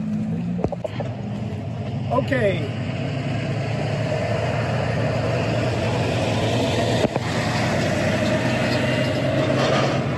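Heavy dump truck's diesel engine running amid road traffic, a steady drone that grows gradually louder as the truck draws close.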